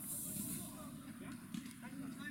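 Faint, distant voices of footballers calling out across an outdoor pitch, over a steady low background rumble, with a short high hiss in the first half second.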